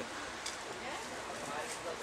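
A pause in speech with steady outdoor background noise, a faint even hiss, and a faint tick about half a second in.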